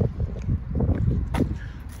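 Wind buffeting the microphone, a steady low rumble, with a couple of brief knocks about halfway through and near the end.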